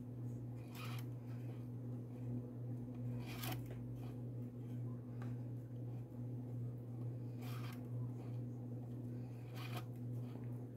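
Short, faint rustles and scrapes of macramé cord being pulled through the fingers and across the board, a few times, the clearest about three and a half seconds in, over a steady low hum.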